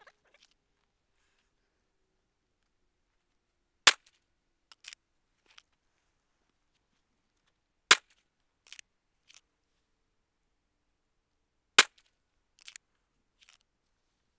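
Handgun fired slowly, one aimed shot at a time: three single shots about four seconds apart, each followed by a few faint ticks.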